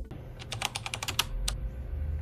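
A quick run of light, sharp clicks, about eight in under a second, then one more click shortly after.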